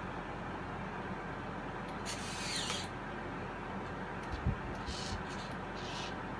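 Servo motors in a 3D-printed robotic hand whirring in short bursts as the fingers curl closed: a brief whine that dips and rises about two seconds in, a low thump a little after four seconds, and short whirs near the end, over a steady hum.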